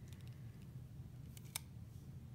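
A single sharp click from a plastic multi-pen barrel being handled in the fingers, about one and a half seconds in, over a faint steady room hum.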